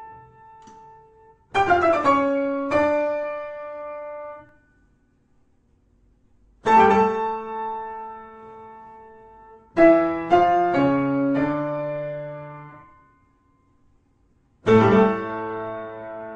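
Slow background solo piano music: sparse chords and short phrases that ring out and die away, with pauses between them.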